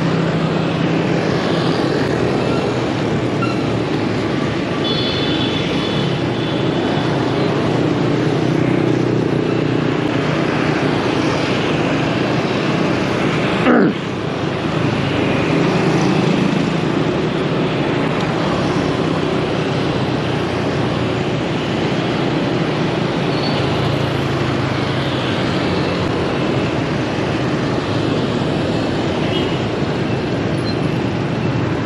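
Street traffic heard from a moving motorbike: a steady mix of motorbike and car engines and road noise, with a short high-pitched tone about five seconds in and a sudden break in the sound near the middle.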